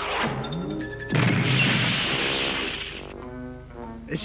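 Cartoon crash sound effect: a sudden loud crash about a second in that dies away over about two seconds, as a falling character hits the ground. Cartoon background music plays under it, with a few held notes near the end.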